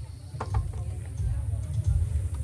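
Outdoor ambience: a low, irregular rumble with a few faint clicks, about half a second in and again near the end.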